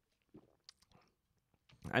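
A man drinking from a stainless steel tumbler close to the microphone: a few faint swallows and mouth clicks spread through the first second. He starts to speak just before the end.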